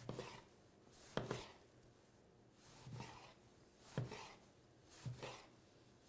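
A chef's knife slicing a tomato into rounds on a cutting board: about five separate faint strokes, each ending with the blade meeting the board.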